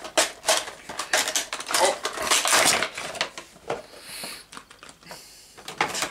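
Cardboard box and plastic packaging crackling and clattering as a vinyl figure is taken out of its box. A dense run of crinkles and clicks lasts about three and a half seconds, then the clicks thin out.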